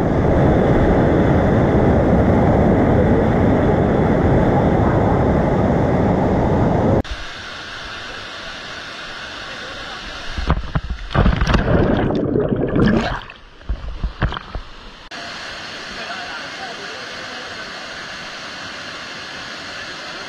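Loud, steady rushing of white-water rapids around the raft, cutting off abruptly about seven seconds in. Then a quieter pool and cascade with a few seconds of loud irregular rushing and splashing, and, after another cut, the steady quieter rush of a rocky stream cascade.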